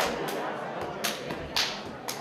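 Sharp single handclaps, four in two seconds at an uneven, roughly half-second beat, over the murmur of crowd chatter.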